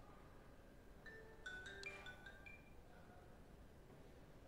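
Near silence, broken about a second in by a faint, short run of bell-like notes at several pitches, lasting about a second and a half.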